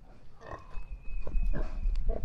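Pigs grunting: a scatter of short grunts from sows and piglets, starting about half a second in, over a low rumble.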